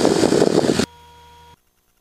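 Cessna 172 cockpit noise, the engine and airflow roar picked up through an open headset microphone, cutting off abruptly a little under a second in. A faint steady electrical hum is left for under a second, then the audio goes silent as the intercom shuts.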